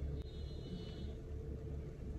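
Steady low rumble and hum inside a stationary car cabin, with a faint high-pitched sound in the first second.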